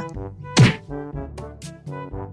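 Comic background music with a slapstick hit sound effect about half a second in: a single thunk with a quick falling pitch.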